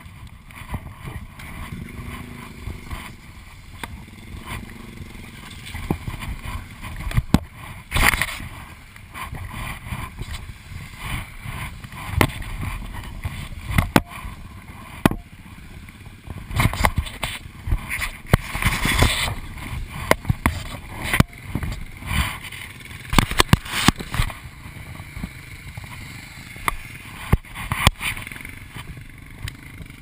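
Close rustling, bumping and knocking of the rider's gear and clothing against a helmet-mounted camera, with wind buffeting the microphone. Dirt-bike engines run in the distance, their pitch rising and falling in the first few seconds.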